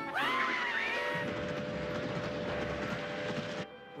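Cartoon sound effects: a high pitched scream that rises and then falls, then a steam train's steady whistle over a rumbling noise. The train sound cuts off suddenly about three and a half seconds in.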